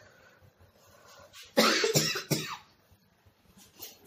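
A person coughs twice, sharply, about a second and a half in.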